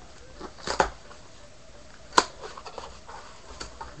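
Packing tape torn off a cardboard shipping case and the cardboard flaps pulled open: a few short, sharp crackles and rips, the loudest about two seconds in.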